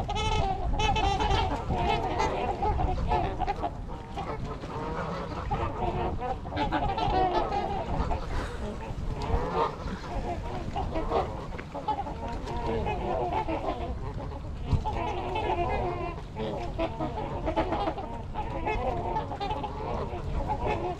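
A mixed flock of Canada geese and trumpeter swans honking, with many calls overlapping in a continuous chorus.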